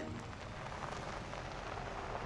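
Steady outdoor street noise: an even hiss with a low rumble underneath.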